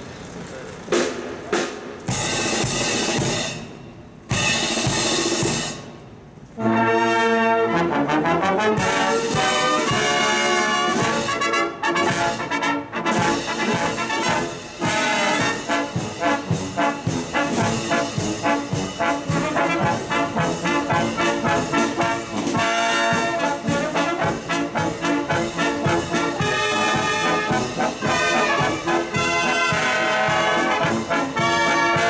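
Military marching band playing a march on the move: brass with a steady drum beat. The brass comes in about six or seven seconds in, after a few seconds of louder, noisier sound.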